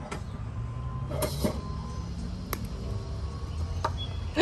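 Steady low outdoor rumble with a few sharp, short clicks spread through it.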